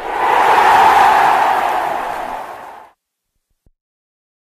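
Intro title sound effect: a burst of noise that swells, then fades away and cuts out about three seconds in, leaving silence.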